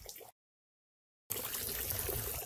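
About a second of dead silence at an edit cut, then a steady faint hiss of background noise.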